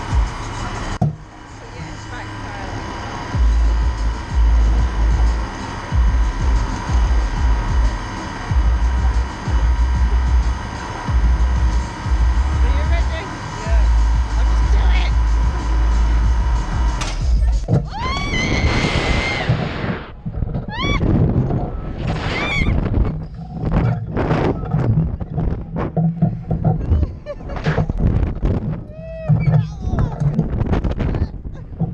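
Riders on a slingshot ride scream as they are catapulted up. A sudden rush about halfway through is followed by a long rising scream, then many shorter shrieks. Before the launch, steady background music plays with low rumbling buffets on the microphone.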